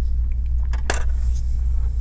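Steady low hum, with a single sharp click about a second in from a small hard part being handled over the open laptop.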